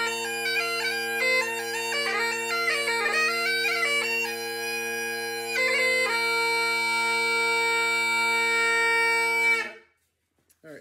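Great Highland bagpipe played on an old Henderson chanter over steady drones, the chanter melody heavily ornamented with grace notes. The tune settles onto long held notes and the pipes cut off suddenly near the end.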